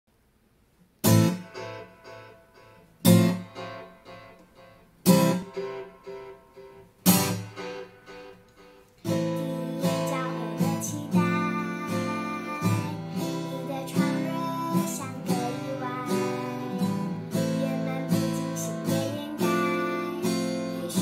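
Acoustic guitar intro: four strummed chords about two seconds apart, each left to ring out. From about nine seconds in, a girl sings a Chinese song over steady strumming on the same guitar.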